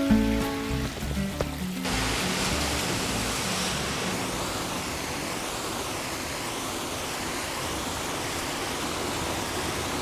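Background music that stops about two seconds in, giving way to the steady rush of ocean surf washing over a cobble beach.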